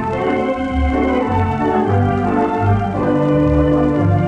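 Wurlitzer theatre pipe organ playing sustained chords over a bass line that moves about twice a second, with faint surface noise, on a 1929 electrically recorded 78 rpm disc.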